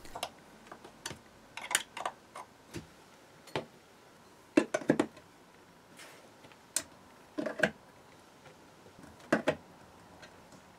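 Steel ER20 collets being handled and set into a 3D-printed PLA collet carousel: a string of irregular light clicks and knocks, some in quick pairs.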